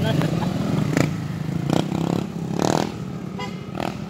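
Several motor scooters pass at low speed, their small engines running steadily. Voices come through briefly near the middle and end.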